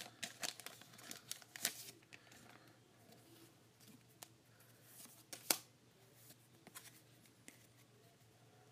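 Pokémon trading cards handled and flipped through by hand, giving faint rustles and small clicks as the cards slide over one another. The rustles are busiest in the first two seconds, with one sharper click about five and a half seconds in.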